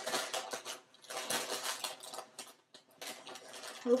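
A cardboard cereal box being handled, its plastic liner crinkling and dry rice cereal squares rattling inside, in bursts of a second or so with scattered small clicks between them.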